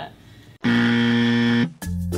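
A loud, steady, buzzer-like sound effect of about a second, starting about half a second in and cutting off sharply. It marks a temperature reading done the wrong way. Chiming music starts right after it.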